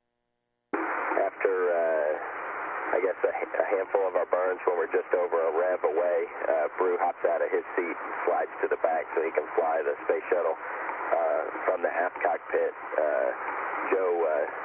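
Speech over a narrow-band radio or intercom channel, cutting in abruptly just under a second in after silence and running on as continuous talk.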